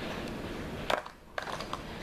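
Small makeup products being handled: a soft rustle, then a sharp plastic click about a second in and a few lighter ticks.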